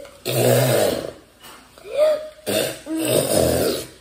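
Two long, rough gagging coughs, the second near the end, from a taster retching in disgust at a rotten-egg-flavoured jelly bean.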